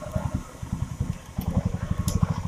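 An engine running with a rapid, even low pulsing.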